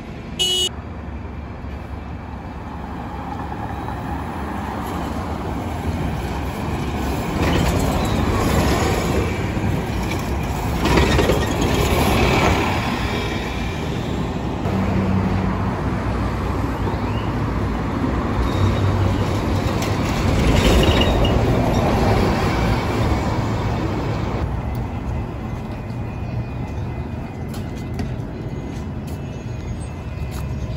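City buses and street traffic: diesel and CNG bus engines running and pulling away, with the noise swelling several times as vehicles pass. A brief sharp high sound comes just after the start.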